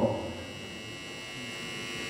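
Steady electrical hum and buzz with a thin high whine in it, under a pause in a man's amplified speech; his last word cuts off at the very start.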